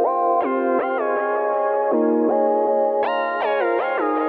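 Korg Prologue synthesizer playing its "Rounded Edges" patch: sustained chords whose notes slide down in pitch into each new chord, with a cluster of downward slides about three seconds in.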